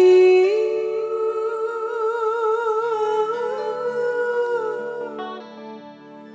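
A female singer holding one long sung note with a wavering vibrato through the PA, over soft sustained keyboard and band accompaniment; the note fades away about five seconds in.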